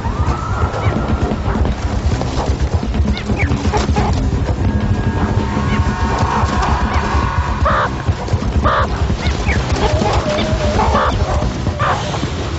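Dramatic background music with a heavy low beat, with a few short animal calls heard over it, most clearly near the end.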